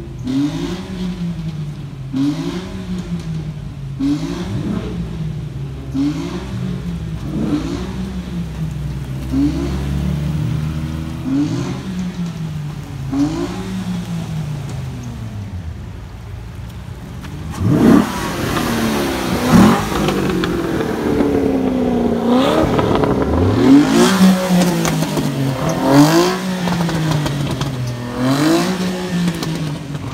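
A sports car's engine is revved again and again, its pitch rising and falling about every two seconds. A little past the middle come a few sharper, louder revs, the loudest part, and the revving then carries on.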